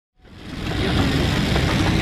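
Steady engine drone inside an airliner cabin, fading in from silence over the first half second.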